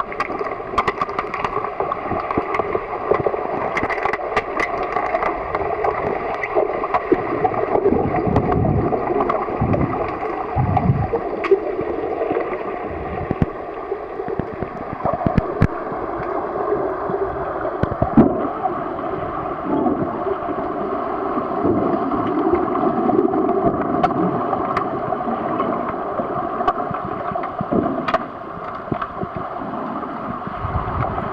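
Underwater pool sound heard through a submerged camera: a steady muffled rush and gurgle of water stirred by swimmers, with scattered sharp clicks and a few dull knocks.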